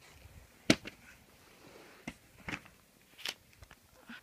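Handling noise on a handheld phone's microphone: a few sharp clicks and knocks, the loudest under a second in and three softer ones later, over a quiet room.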